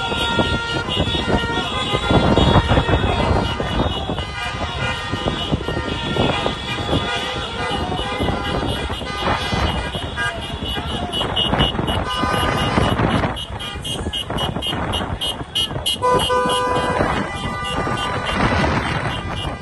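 Car horns honking in moving street traffic, with voices shouting over the engine and road noise; a longer horn blast sounds near the end.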